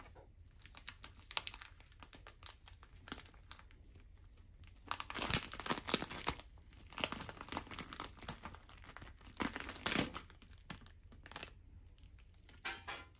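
Thin plastic film and small plastic sauce sachets crinkling and rustling as they are handled, in irregular crackly bursts that grow louder about halfway through and again near the end.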